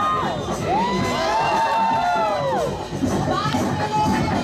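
Crowd cheering and shouting over the DJ's break music during a breakdancing battle round, with one long drawn-out cry in the middle.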